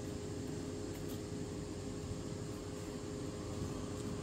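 A steady mechanical hum with a faint high whine and an even hiss, holding level with no distinct events.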